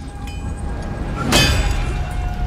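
TV drama soundtrack: a low rumble builds, then a loud burst of noise comes about halfway through.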